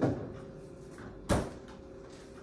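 A kitchen cupboard door shutting with one sharp knock about a second and a half in, after a softer knock at the start.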